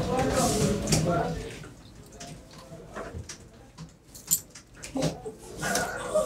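Low voices murmuring at first, then a quieter stretch with a few faint sharp clicks of coins being handled, and voices rising again near the end.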